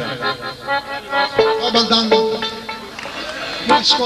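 Folk band with accordions and a violin playing scattered held notes and short phrases.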